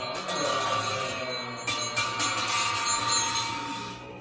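Tibetan ritual hand bell shaken rapidly and continuously, jingling over the low group chanting of Buddhist monks; the bell stops near the end.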